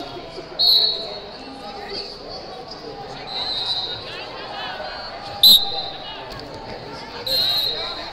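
Several short, shrill referee whistle blasts ring out across a large, echoing hall, the loudest about five and a half seconds in, over shouting voices and chatter.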